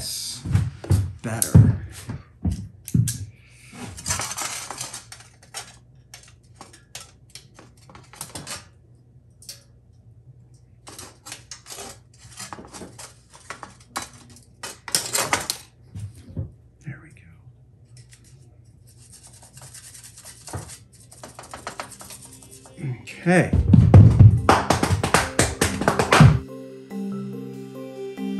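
Many small clicks, taps and scrapes of thin metal crown pieces being handled and fitted onto a metal crown band, over a steady low hum. A louder burst of sound comes near the end.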